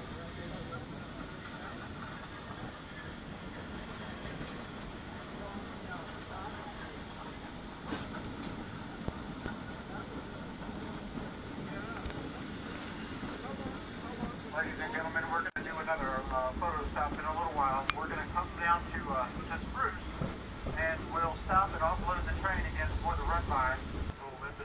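Steady running noise of a train heard from aboard an open-sided passenger car. From about halfway through, passengers' voices talk over a deeper rumble.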